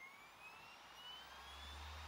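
A laptop's disc drive spinning up as the audio track is loaded: a faint whine rising steadily in pitch. A low hum starts about a second and a half in.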